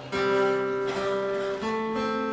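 Acoustic guitar chord struck and left ringing, then a change to another chord about one and a half seconds in.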